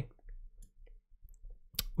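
Faint scattered computer mouse clicks while settings are adjusted, with one sharper click near the end.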